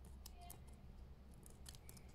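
Near silence: room tone with a low hum and a few faint, short clicks.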